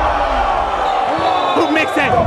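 The channel's logo sound sting: a loud, dense, layered mix of sound effects with voice-like sounds in it, and a few short rising chirps near the end.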